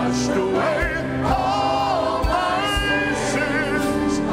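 Mixed church choir singing a gospel anthem with instrumental accompaniment: held, gliding sung lines over a regular low beat.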